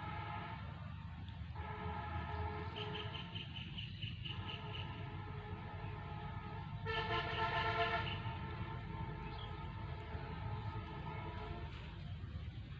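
A horn sounding in long held notes with short breaks, loudest about seven to eight seconds in, over a low wind rumble on the microphone.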